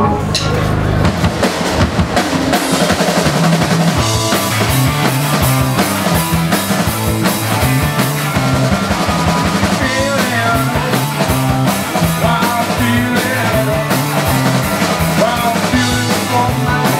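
A garage-punk rock band playing live: a held chord rings out, then about a second in the drum kit kicks in with electric guitar and a stepping bass line in a driving beat.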